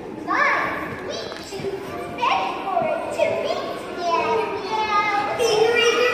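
High-pitched, childlike voices talking and calling out.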